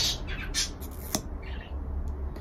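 Mascara tube being opened: a single sharp click about a second in as the wand is pulled free, over a low steady room hum.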